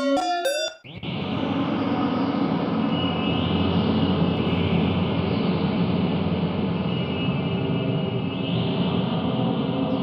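Nitrox software synthesizer playing its 'Old Factory' preset: a dense, noisy, sustained drone with a slow sweep in its upper range. It starts about a second in, after a few short pitched notes with bending pitch.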